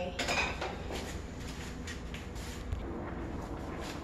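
A metal pot and cooking utensils clattering and clinking on a stovetop as the pot is handled. It is loudest in the first half second, followed by lighter clinks over a low steady hum.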